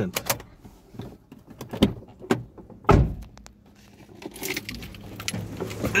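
Inside a slowly moving car: scattered clicks and light rattles, a heavy thump about three seconds in, and a low engine hum toward the end.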